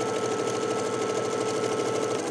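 Baby Lock domestic sewing machine running at a steady speed, stitching a seam along a diagonal line through two layers of fabric. It makes an even motor hum with a fast, regular needle rhythm.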